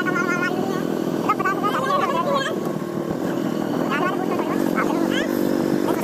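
Hero motorcycle's small single-cylinder engine running steadily while riding along a dirt lane, with a person's voice breaking in several times.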